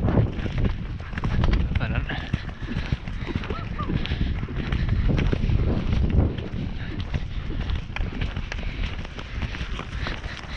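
Horses galloping on turf, heard from the saddle: a fast, irregular drumming of hoofbeats from the ridden horse and the horses close ahead.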